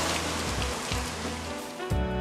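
Water from a hose running and splashing over a car's hood, fading out near the end, over background music with steady low notes.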